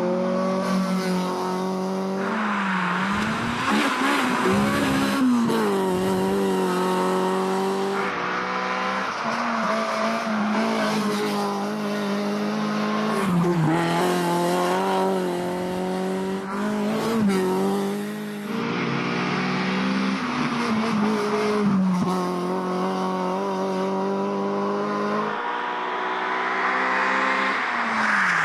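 Rally car engines running hard at high revs, the pitch dipping and climbing again and again with lifts and gear changes. The sound comes from several separate passes joined by sudden cuts.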